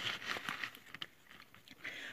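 Faint handling noise of plastic page-protector sleeves being touched and shifted: light rustling with scattered small clicks, one sharper tick about a second in.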